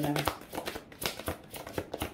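A deck of tarot cards being shuffled by hand: a quick, irregular run of cards flicking and slapping against each other.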